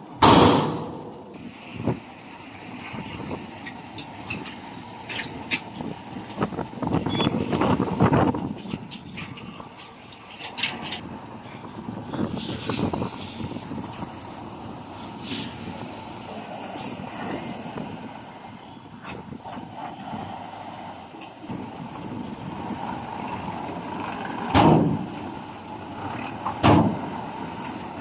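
Heavy dump trucks' diesel engines running while they tip loads of earth. The engine noise swells for a few seconds early on, with scattered sharp clicks and two short loud bursts in the last few seconds.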